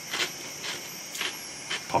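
A person chewing a crisp, puffed papadum-like snack ball with a few soft crunches, roughly every half second.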